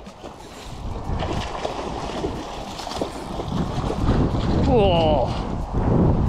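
Wind buffeting the microphone, getting louder about halfway through, with one short shout from a man near the end.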